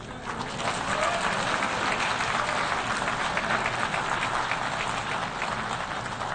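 Audience applauding: steady clapping that builds over the first second, holds, and eases off slightly near the end.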